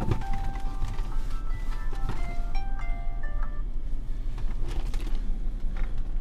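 Ausdom dashcam playing a short electronic chime tune, notes stepping up and down, ending about three and a half seconds in, over a steady low hum; a knock sounds at the very start.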